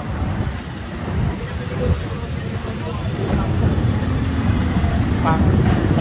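Busy street traffic: a steady low rumble of passing vehicle engines that grows louder toward the end.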